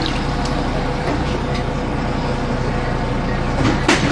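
City bus engine running steadily while floodwater sloshes across the bus floor, with a sudden loud surge of noise just before the end.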